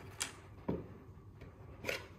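A few light knocks and clicks as a small ink bottle and parts of a wooden box are handled and set down on a table, the sharpest knock near the end.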